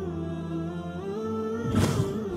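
Wordless hummed vocal music, a cappella, holding slow sustained notes that step in pitch. A short whoosh sounds near the end.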